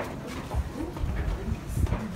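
Footsteps of a group climbing a narrow stone stairway, with irregular dull low thumps from about half a second in as the phone is carried along, and a brief murmured voice near the start.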